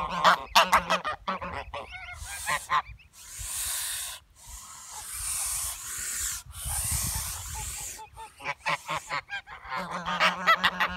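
Domestic geese honking in short, rapid calls, then from about two seconds in a few long hisses of a second or so each, then honking again near the end.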